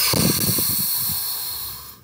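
A loud hissing rush of air close to the microphone, starting suddenly and fading over about two seconds.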